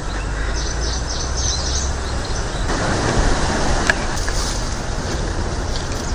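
Steady outdoor rushing noise with a heavy low rumble, swelling briefly about three seconds in, and a few faint bird chirps in the first two seconds.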